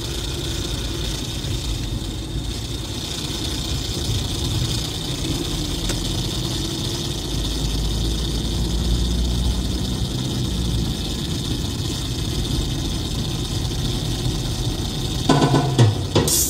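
Car engine and road rumble heard inside the cabin while driving, steady, growing deeper and louder through the middle, with a faint engine note rising and falling. Music starts up again just before the end.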